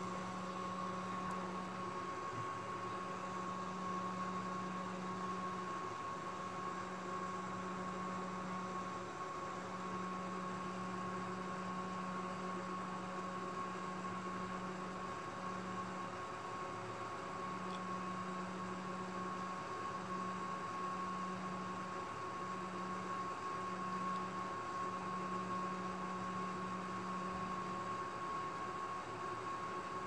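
Air-cooled overclocking test-bench PC running as it reboots and boots: a steady electrical and fan hum with a constant high-pitched tone, and a lower hum that drops out briefly several times.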